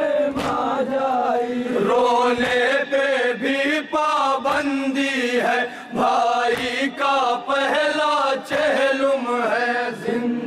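Group of men chanting a Shia noha (mourning lament) in unison, with repeated short slaps of open hands beating on chests (matam) through the chanting.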